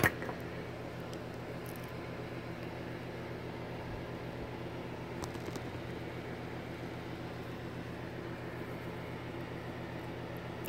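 Electric fan running steadily, a low hum under an even airy hiss, with a couple of faint clicks as thread is worked through the serger's looper guides.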